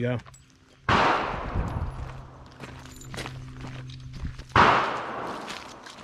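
Two 7.62×39 rifle shots about three and a half seconds apart, each trailing off in a long echo.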